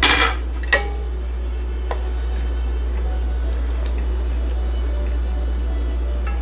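Wooden spatula knocking against an enamelled cast-iron braiser while stirring: a sharp clack at the start, a second one under a second later and a light tap near two seconds, over a steady low hum.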